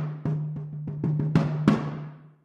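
Sampled frame drums from Soundpaint's Epic Frame Drums library, played from a keyboard: a quick, uneven run of about ten hand-drum strikes over a steady low ring. The church-hall reverb is shortened to a much more local sound, like a little scoring stage.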